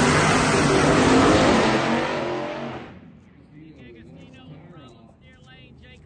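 Two Pro Mod drag cars leaving the starting line side by side at full throttle. The engines are very loud at first, then fade quickly and drop away about three seconds in as the cars run down the track.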